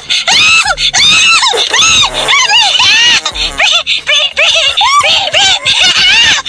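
A high-pitched voice vocalizing in short, rising-and-falling wordless arcs over background music.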